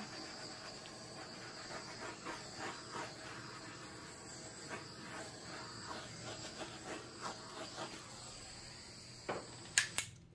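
Faint steady hiss of a handheld torch flame passed over wet acrylic paint to pop air bubbles. It stops near the end with a couple of sharp clicks.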